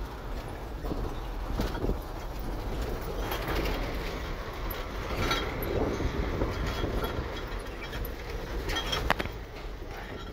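Cab noise of an Isuzu FRR truck driving on a rough dirt road: the diesel engine runs with a steady low rumble, with rattles and clicks from the cab and a sharp knock about nine seconds in.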